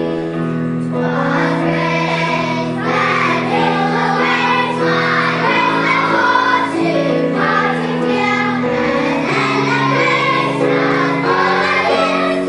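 Choir of young children singing, with sustained keyboard chords underneath; the voices come in about a second in.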